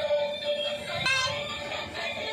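Light-up toy bus playing its electronic music: a held note, then a short electronic phrase about a second in.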